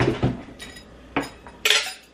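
Dishes clinking and clattering as they are moved out of the way, with a knock at the start, a sharp clink about a second in and a louder clatter near the end.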